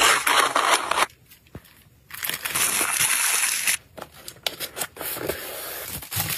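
Clear plastic packaging crinkling as a wrapped item is handled into a small kraft cardboard box, in three bursts of rustling with a few light taps near the middle.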